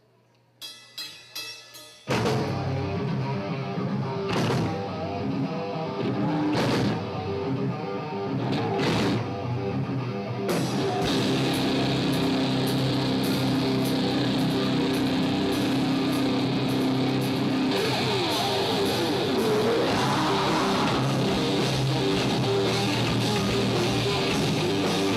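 Live metal band starting a song. After a brief hush and a few light clicks, distorted electric guitars, bass and drum kit come in loud about two seconds in, with several cymbal crashes, then settle into a dense, steady driving section.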